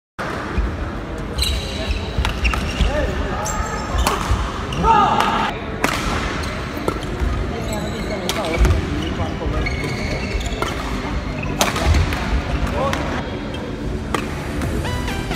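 Badminton doubles rally in a large hall: sharp racket hits on the shuttlecock, with shoes squeaking and thudding on the court mat as the players move.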